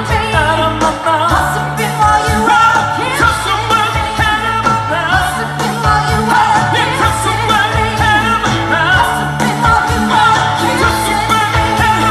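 A live rock band playing loud on an outdoor stage, with electric guitars, keyboards and a steady drum beat under a male and a female lead singer.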